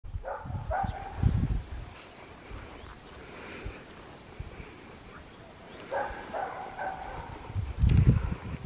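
A dog giving short pitched calls in two bouts, near the start and again around six to seven seconds in. A low rumble on the microphone about a second in is the loudest sound.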